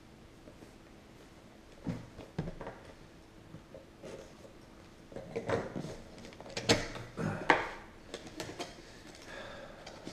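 Cardboard reel box being handled and opened on a wooden table: scattered taps, knocks and scraping, busiest in the second half.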